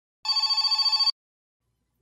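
A short telephone-ring sound effect: one fast-trilling, high ring lasting just under a second.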